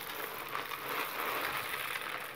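Dried chickpeas poured in a steady stream from a bag into plastic-mesh cells in a glass baking dish, a continuous rattle of hard little peas landing on peas and glass.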